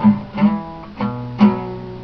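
Acoustic guitar strummed steadily, about two strums a second, each chord ringing on between strokes.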